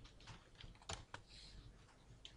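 Faint typing on a computer keyboard: a few separate, irregularly spaced key clicks.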